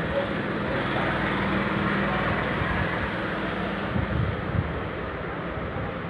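Steady background rumble and hiss of road traffic with a low hum, and a few soft low knocks about four seconds in.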